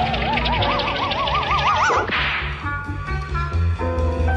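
Cartoon music score with sound effects. A wavering, whistle-like tone rises in pitch and wobbles more and more widely for about two seconds. A short rush of noise cuts it off, and held orchestral notes follow over a steady bass line.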